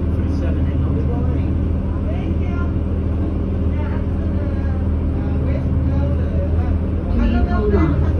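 Cabin sound of a New Flyer C40LF transit bus: its Cummins Westport ISL G natural-gas engine running with a steady low hum, with passenger voices over it near the end.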